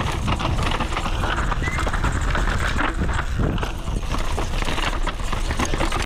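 Downhill mountain bike clattering over a rough, rooty track: rapid irregular knocks and rattles over a steady low rumble.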